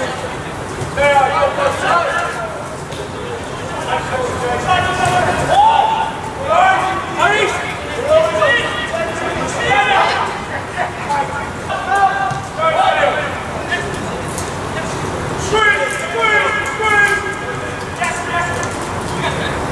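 Voices shouting across a football pitch during play: short, high-pitched calls again and again, with outdoor background noise.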